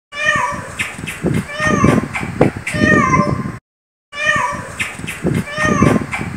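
A cat meowing again and again, each meow a falling cry, over a man's talking. There is a half-second break of silence just past the middle.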